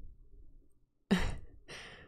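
A woman's breathy sigh into a close microphone about a second in, followed by a shorter, fainter breath.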